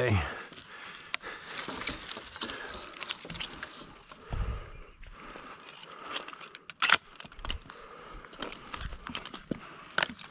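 Rustling and scattered small clicks of climbing gear and a folding pruning saw being handled, with one sharp click about seven seconds in.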